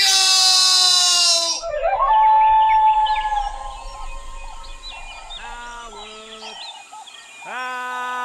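A long cry slowly falling in pitch, cut off about a second and a half in, then jungle sound effects: many short bird chirps and whistles, with hooting animal calls about five seconds in and again near the end, as a character tumbles into the monkey pit.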